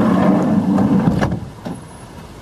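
Loud, rushing outdoor background noise from the field microphone beside a van, dropping off about a second and a half in, with a sharp click just before the drop.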